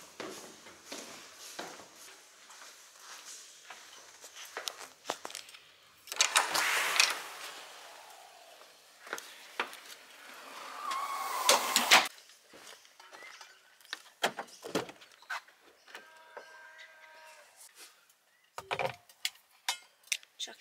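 Footsteps going down wooden stairs, then the doors and handling noise of getting into a car: scattered footfalls and clicks, two louder rushes of noise about a third of the way in and just past halfway, and a short steady tone near the end.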